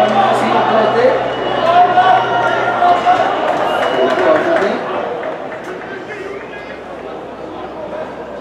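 Voices shouting and talking at a football match, several people calling out at once. The voices are loud for about the first five seconds, then die down.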